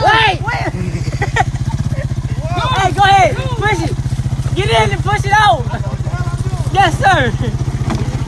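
ATV engine idling steadily with an even, low pulsing beat, with voices talking over it.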